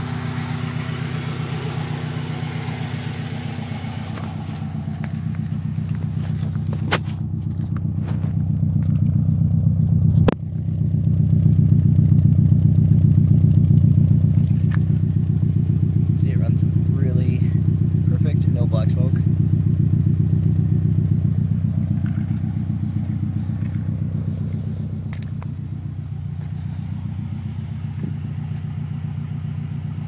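Subaru Impreza WRX's turbocharged flat-four engine idling steadily through an aftermarket exhaust, growing louder towards the middle and easing off near the end. A single sharp knock about ten seconds in.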